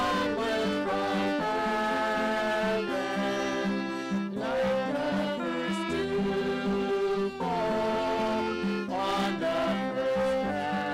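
Three violins and an acoustic guitar playing a hymn tune together, the violins holding long bowed notes over the guitar's chords.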